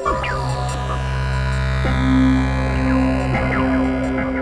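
Experimental electronic synthesizer drone: low sustained tones start at once, a steady higher tone joins about two seconds in, and short falling pitch sweeps recur over the top.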